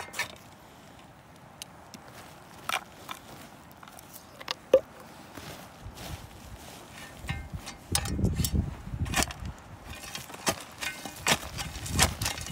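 Loose shale chips and flakes clicking and scraping as they are moved and shoveled, as scattered sharp clicks, with a denser stretch of scraping and rustling about eight seconds in and more clicks near the end.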